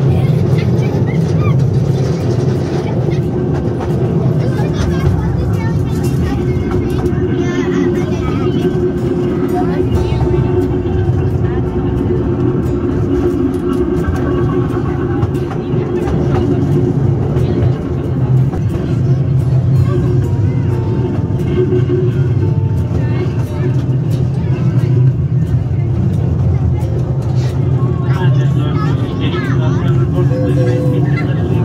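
Steady running of a small passenger ride train, heard from onboard: a continuous low engine drone under voices.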